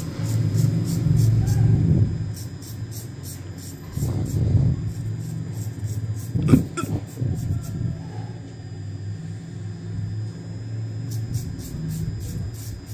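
Straight razor scraping short hair off a scalp in quick, evenly spaced strokes, in runs with short pauses, over a steady low hum.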